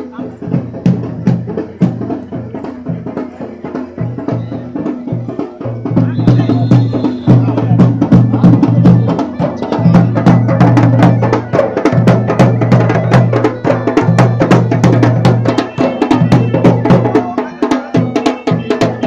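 Uttarakhandi folk music with fast, dense drumming over a steady low drone and vocals. It grows louder about six seconds in.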